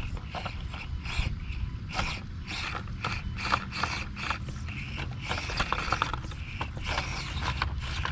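Axial SCX24 1/24-scale rock crawler's small electric drivetrain working as it crawls over rock, with many sharp, irregular ratchet-like clicks from its gears and tyres.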